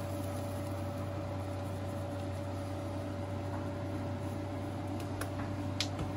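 A kitchen appliance's steady hum, with a faint high tone held throughout. Two faint clicks come near the end.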